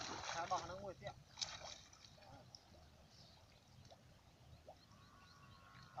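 Voices briefly at the start, then faint water sloshing and light splashing as people wade in shallow lake water, handling a cast net, with a couple of short splashes about a second in.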